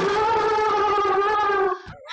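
A person's long, excited high-pitched squeal, held at a nearly steady pitch and cutting off near the end.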